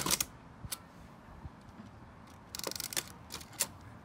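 Mamiya RB67 medium-format camera firing: one sharp shutter click at the start. Scattered small clicks follow as hands work the camera's controls, with a brief run of rapid fine clicks a little over halfway through.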